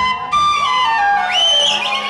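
Side-blown bamboo flute playing a melody: the notes step downward, then leap up to a high, wavering note a little past halfway.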